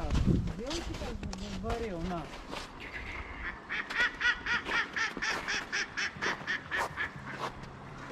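A duck quacking in a rapid series of about a dozen short calls, roughly three a second, starting about halfway through and tailing off near the end.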